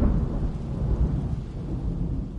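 Thunder sound effect: a deep rumble under a steady hiss like rain, slowly fading.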